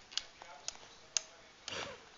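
Small wet clicks and smacks from a baby sucking on his fingers, three of them about half a second apart, then a short breathy sound near the end.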